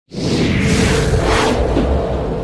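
Logo-intro sound effect: airy whooshes sweeping up and down over a low rumble and a held tone, starting abruptly.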